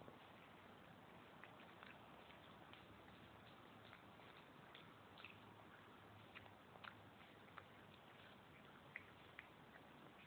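Faint, irregular chewing clicks of a cat biting and eating yellow flower petals, over a steady low hiss.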